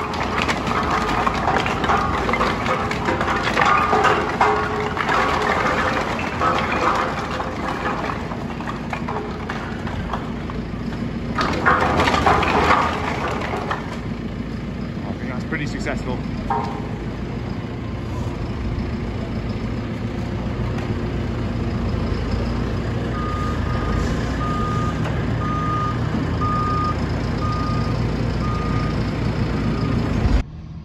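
Telehandler diesel engine running while firewood logs clatter out of its tipped bucket into bulk bags hung on a three-bag loading frame, the clattering loudest about twelve seconds in and dying away soon after. Near the end a reversing alarm beeps steadily, about once a second.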